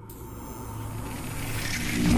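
A logo-animation sound-effect riser: a dense whooshing rumble with a low hum underneath, swelling steadily louder as it builds towards a boom.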